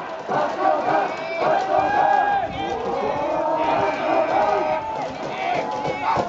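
A group of voices shouting cheers in the stands at a baseball game, several voices overlapping throughout.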